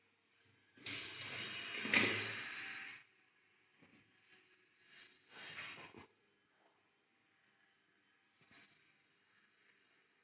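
Stainless steel pizza cone oven door being unlatched and opened: a scraping sound of about two seconds with a clunk near its middle, then a second, shorter noise about five seconds in.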